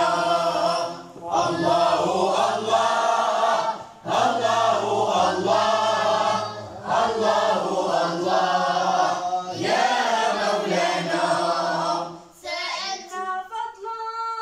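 A group of boys singing madih, a devotional praise song, in unison without instruments. They sing in phrases of about three seconds with short breaths between. About twelve seconds in the group stops and a single boy's voice starts a solo line.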